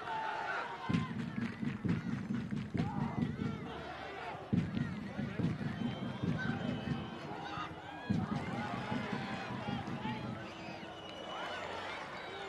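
Live pitch-side sound of a football match: players shouting and calling to one another, over a low rumble that comes in and out in stretches of a few seconds, with scattered sharp knocks.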